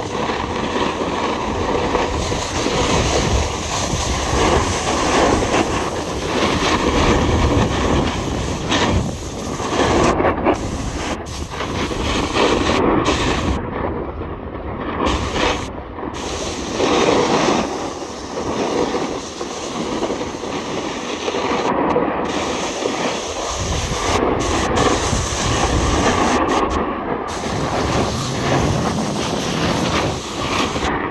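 Wind rushing over the microphone and edges scraping and chattering over firm, packed snow while descending a ski slope at speed, a continuous loud rumble that swells and eases.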